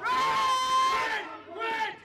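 A loud shout held on one pitch for about a second, then a shorter shout near the end, as a shot goes in for a goal.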